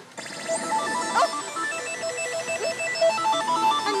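Pachislot machine playing a simple electronic beeping melody, short steady notes stepping up and down in pitch, with a brief sliding sound effect about a second in.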